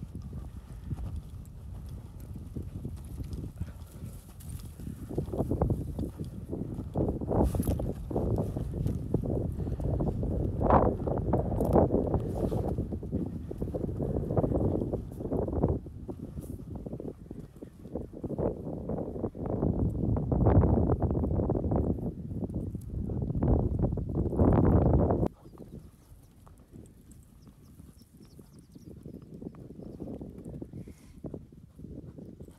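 Footsteps crunching irregularly over dry, crusted ground and brush, heavy and low-pitched, stopping abruptly a few seconds before the end and leaving only a faint low rumble.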